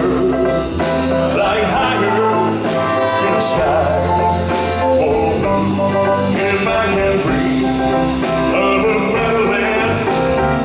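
Live band music with a male lead singer singing into a hand-held microphone, the voice coming in about a second and a half in over steady accompaniment.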